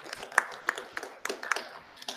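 Brief applause from a small audience: a scattering of separate, irregular hand claps.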